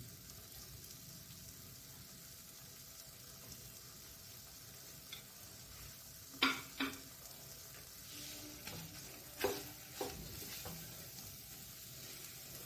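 Onion-and-spice paste (masala) frying in oil in a nonstick pan with a faint, steady sizzle. A few short knocks, twice about halfway and twice more near the end, come from the silicone spatula stirring against the pan.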